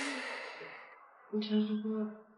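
A woman's breathy sigh that trails off. Near the end comes a short, steady-pitched vocal sound from her.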